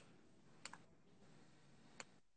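Near silence with a few faint clicks from working a computer: one at the start, one about two-thirds of a second in, and one at the end.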